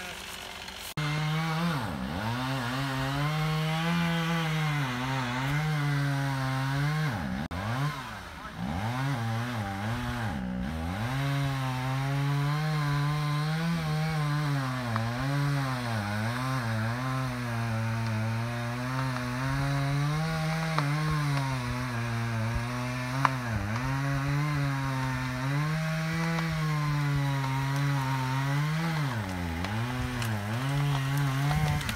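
Chainsaw running at high revs through wood, its pitch sagging and recovering under load, with short drops in revs about 2, 8 and 10 seconds in and again near the end.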